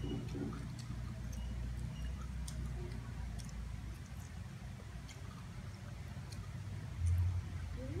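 Quiet sounds of eating by hand: faint scattered clicks and ticks of fingers, food and plate over a low steady hum, with a brief low bump about seven seconds in.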